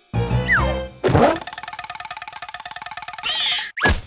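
Cartoon sound effects over music: a falling glide with low thumps, then a springy boing that wobbles rapidly for about two seconds. A swish and a quick falling zip come near the end.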